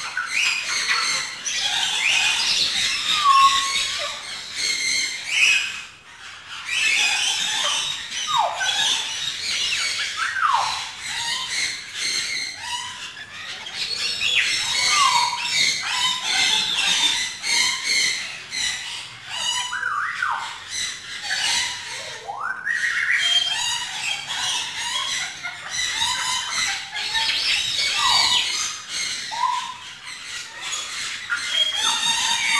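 Caged birds chirping and squawking without pause: a dense run of high chirps, with a short squawk that drops in pitch every few seconds.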